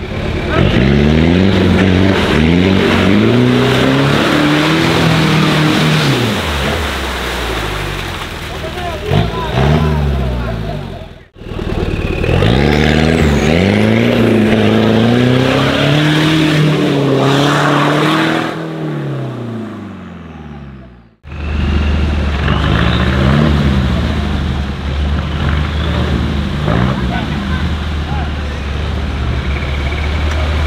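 Engines of off-road 4x4 trucks revving hard under load in mud, pitch climbing and falling again and again. The sound comes in three separate takes, each cut off abruptly. The last take settles into a steady low running note with a couple of short revs.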